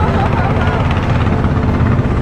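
Engine of a long, narrow wooden river boat running steadily under way, a low, rapid chugging.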